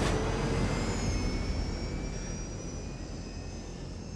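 Jet aircraft engines in flight: a steady rumbling roar with a thin high whine, slowly getting quieter.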